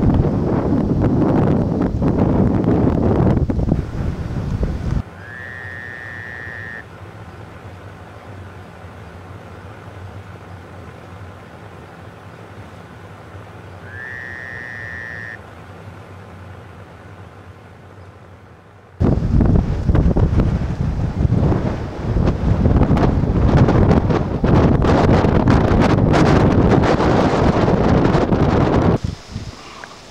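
Wind buffeting the microphone in gusts. It drops away abruptly for about fourteen seconds in the middle and returns just as suddenly. In the quieter stretch a clear whistled call, rising slightly then held, sounds twice about eight seconds apart.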